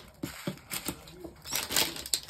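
Small plastic bags of diamond-painting drills being handled: a few soft clicks and taps, then plastic crinkling that grows louder near the end.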